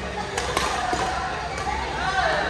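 Badminton rackets striking a shuttlecock during a rally: a couple of sharp smacks about half a second in, over the steady murmur of voices in a large sports hall.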